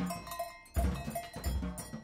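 Improvised percussion duo: drum kit with a few heavy bass-drum and drum hits, about a second in and again near the end, among short ringing pitched percussion strikes.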